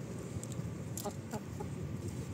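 Chickens clucking softly, a few short calls about half a second, one second and one and a half seconds in, over a steady low background rumble.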